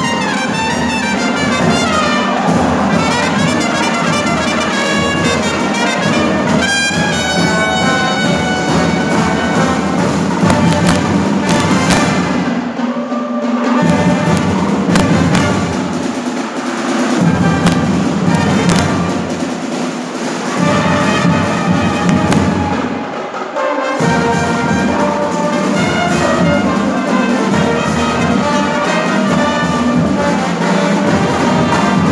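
A Brazilian fanfarra (brass-and-percussion band) playing in full ensemble: trumpets, trombones, euphoniums and sousaphones. Partway through, the low brass drops out for short moments several times.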